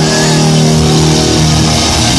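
Live hard rock band playing loud: electric guitars hold a long sustained chord over washing cymbals, breaking off into new playing about one and a half seconds in.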